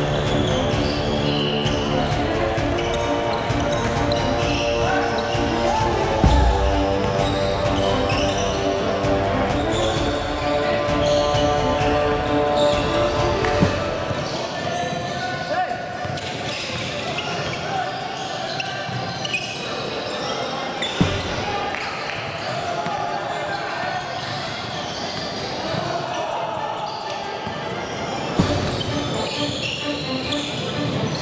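Basketball game in a gym: a ball bouncing on the hardwood court, with scattered sharp knocks and indistinct players' voices echoing in the large hall. Music with long held notes plays over roughly the first half, then fades out.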